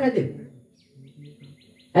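A man's speech trails off, then a rapid chirping call sounds: a string of short, evenly spaced, high-pitched chirps, about seven a second, lasting about a second.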